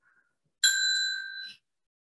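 A single bright bell ding, struck once and ringing for about a second before it stops. It is a timekeeping signal marking the start of a one-minute preparation period.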